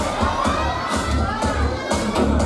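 Crowd cheering and shouting over loud music with a heavy bass beat thudding about twice a second.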